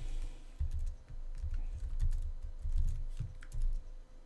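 Typing on a computer keyboard: an uneven run of keystrokes, each a dull thump with a faint click on top.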